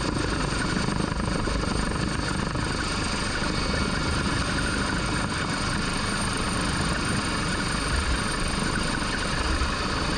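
MH-139A Grey Wolf twin-turbine helicopter in flight, heard from inside the open cabin door: steady rotor and engine noise with no change in pitch or level.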